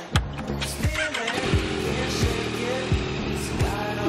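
Yamaha MT-09 motorcycle's three-cylinder engine started: a sharp click just as the key is turned, then the engine catches and runs steadily at idle. Background music with a bass beat plays over it.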